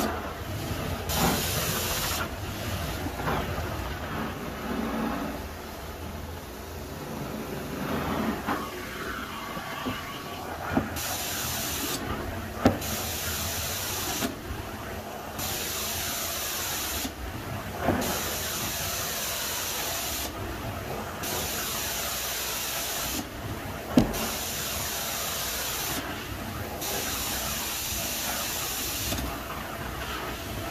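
Carpet extraction wand running with steady suction. From about a third of the way in, its spray jet hisses on and off in strokes of about two seconds, roughly seven times. A few sharp knocks come between strokes.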